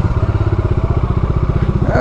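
Motorcycle engine running at low revs, with a steady, even beat.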